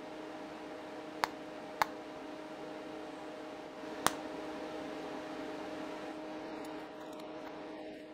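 TIG welding setup running with a steady hum, broken by three sharp clicks in the first half.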